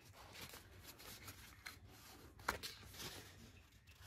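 Faint rustling and crinkling of patterned paper as it is folded and pressed along a score line by hand, with a soft tick about two and a half seconds in.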